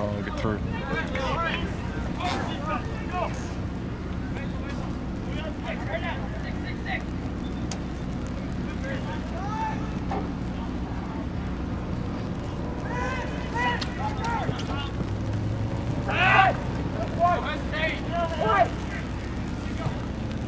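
Scattered distant shouts and calls from soccer players and spectators across the field, over a steady low background rumble. The calls get louder and come in a cluster late in the stretch.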